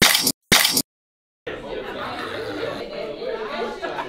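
Two short, loud bursts of noise, each cut off sharply, then a moment of silence; from about a second and a half in, a room full of people chatting and laughing over one another, with the odd clink of dishes.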